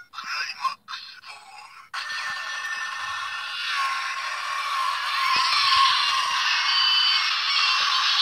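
Bandai DX Climax Phone toy playing an electronic sound effect through its small speaker, starting about two seconds in and growing louder. Before it come a few faint plastic clicks as the phone is handled.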